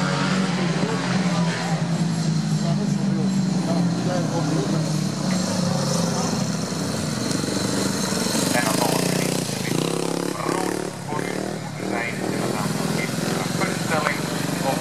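Speedway motorcycles' 500 cc single-cylinder engines running as a steady low drone for the first several seconds. The drone then weakens, and a voice talks over it from about eight seconds in.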